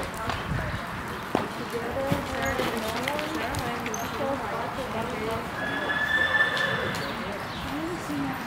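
Hoofbeats of several horses walking and trotting around an indoor arena, with background chatter from people nearby.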